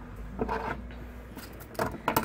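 Light clinks and clacks of metal jewellery pliers being picked up and handled over a wooden worktable, with a few sharper clicks near the end.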